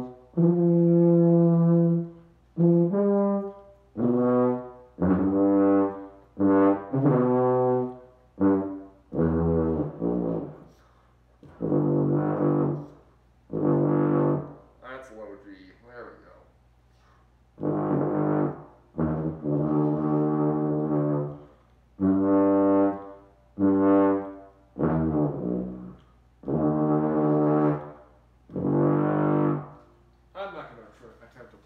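Getzen baby contrabass bugle in G being played: a halting run of separate held low brass notes at changing pitches, each lasting about half a second to two seconds, with short breaths between them and a longer pause about halfway through.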